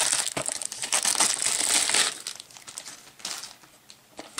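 Plastic shrink wrap crinkling as it is peeled off a small cardboard box. It is dense and loud for about two seconds, then thins to a few quieter crackles.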